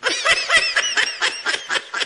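Rapid, high-pitched laughter, a string of quick pulsed giggles.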